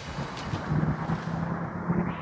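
Outdoor street ambience: wind rumbling on the microphone over a low, steady drone of city traffic.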